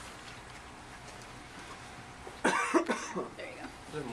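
A person coughs in a short, loud burst about two and a half seconds in, followed briefly by softer voice sounds. Before it there is only faint room tone.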